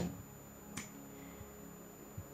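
Two sharp clicks, one right at the start and one under a second later, over faint background music.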